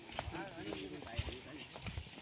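Footsteps on a paved path, a few steps about a second apart, with faint voices of people talking in the background.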